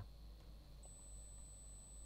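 Near silence between narration segments, with a faint low hum and a faint thin high tone that starts a little under a second in.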